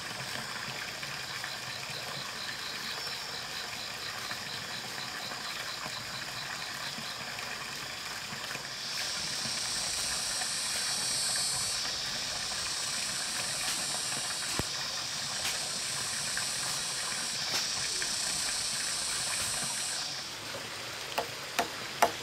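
Steady splashing hiss of water pouring from a pipe into a pond. A louder, higher hiss comes in about nine seconds in, breaks off briefly twice and stops near the end, followed by a few sharp knocks.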